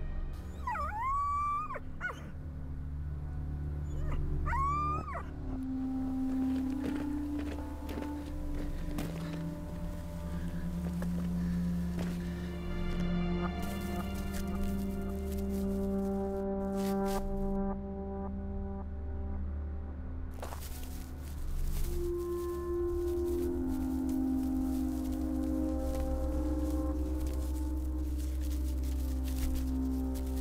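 A dog whining twice in the first few seconds, each whine about a second long and bending in pitch. Background film music with long held notes plays throughout.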